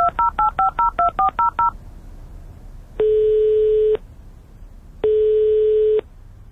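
Touch-tone DTMF dialing tones, a quick run of about nine two-pitch beeps in under two seconds, broadcast by a radio spot to dial a landline phone. Then two one-second telephone ringing tones, a second apart, as the dialed call rings through.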